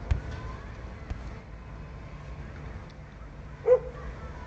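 Low steady background with a sharp click at the start, then a single short, pitched yelp-like call near the end.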